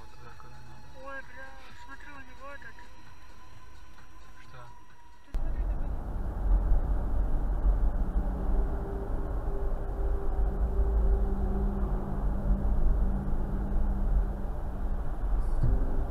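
Road and engine noise from a moving car, heard from inside the vehicle as a steady low rumble that starts suddenly about five seconds in. It is preceded by a faint voice.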